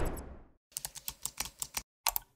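Computer keyboard typing sound effect: a quick run of about ten key clicks, after a short whoosh that fades out at the start.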